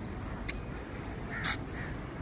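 Crows cawing outdoors over a steady low rumble, with a sharp click about half a second in and a louder, harsh call about a second and a half in.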